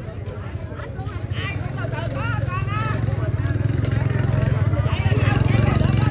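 A motorbike engine running close by, its low rumble growing louder over about five seconds, with several people talking over it.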